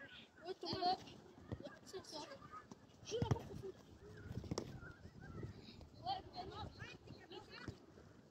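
Children calling and shouting during a football game, with a few sharp thuds of the ball being kicked, the loudest about three seconds in.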